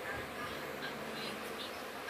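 Steady, fairly quiet buzzing background noise.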